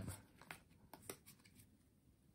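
Faint soft clicks and rustle of a handful of Pokémon trading cards being slid from the back of the stack to the front.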